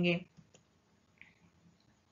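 A woman's voice trailing off at the end of a word, then near silence broken by a few faint clicks.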